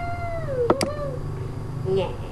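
A long, high drawn-out call, held steady and then dipping in pitch, with two sharp mouse clicks close together in the middle.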